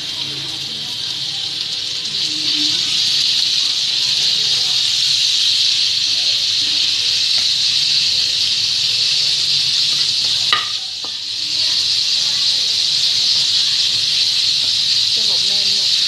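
Ground pork sizzling in hot oil in a nonstick wok as it is stir-fried with a wooden spatula. The sizzle builds over the first few seconds, then holds steady; a sharp knock about ten seconds in is followed by a brief dip in the sizzle.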